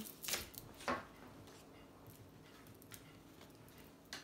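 Tarot cards being handled and drawn from the deck: a few sharp snaps and taps in the first second, then only faint occasional ticks.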